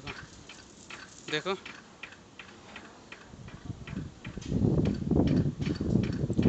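Sharp metallic ticks and taps from steel tank-shell construction work, coming at an uneven pace. A louder low rumbling noise sets in about four and a half seconds in.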